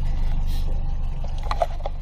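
Boat's outboard engine running at low speed, a steady low hum under a layer of wind and water noise.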